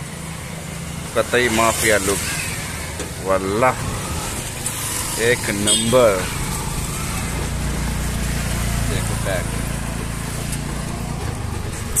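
A small motorcycle engine running steadily at low speed, with a heavier low rumble building from about seven seconds in as the bike moves off along the street.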